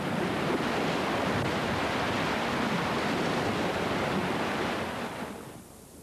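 Sea surf breaking over a rocky shore: a steady rush of churning water that fades away near the end.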